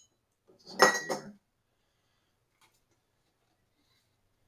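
A stainless steel funnel set down on a hard surface with a single metallic clatter about a second in, ringing briefly.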